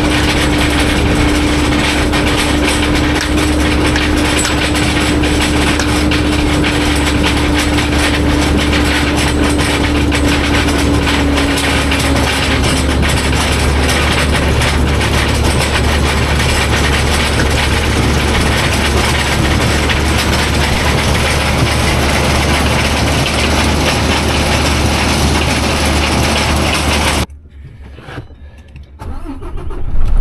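Grimme RH potato storage bunker unloading into a truck: its conveyor and elevator running and potatoes tumbling into the metal tipper body, a loud steady mechanical din with a humming tone that fades about twelve seconds in. It cuts off suddenly near the end to much quieter sound.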